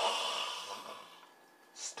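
A man's heavy sigh, a breathy exhale that starts suddenly and fades away over about a second.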